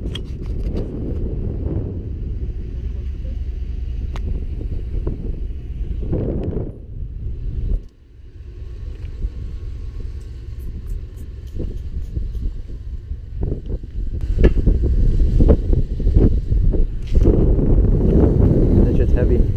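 Wind buffeting the microphone: a gusty low rumble that dies away about seven to eight seconds in, then builds back and is loudest near the end, with scattered small clicks and knocks.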